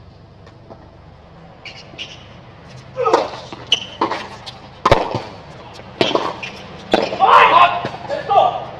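A tennis ball struck with rackets and bouncing on a hard court: a few sharp pops about a second apart. A man's voice calls out between and over them.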